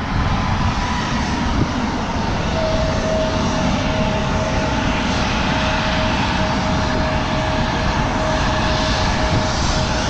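Jet aircraft running on the apron: a steady, even roar with a thin high whine that sets in about two and a half seconds in and holds.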